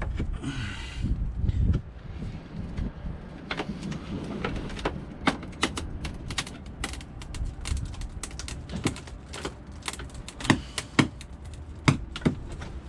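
Hammer knocking a metal blade into the sealant seam around an old cockpit locker frame to cut and pry it loose: irregular sharp taps, some in quick pairs, that grow more frequent after the first few seconds. A brief rushing noise comes in the first couple of seconds.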